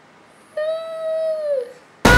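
A woman's high-pitched wordless vocal sound: one held note about a second long, starting about half a second in and dipping in pitch at the end.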